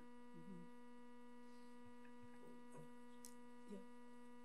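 Near silence with a steady electrical hum, a constant low tone with evenly spaced overtones, and a couple of faint, brief sounds.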